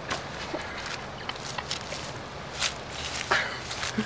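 Scattered soft crunches and rustles of movement on wet, leaf-strewn mud, as a sneaker stuck deep in the mud is reached for and tugged.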